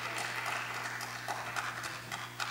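A pause in speech in a large room: a steady low hum with faint scattered clicks and rustles.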